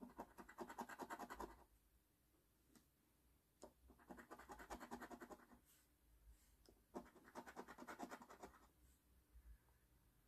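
A coin scraping the latex coating off a scratch-off lottery ticket: three faint bouts of quick back-and-forth scratching, each about a second and a half long, with short pauses between them.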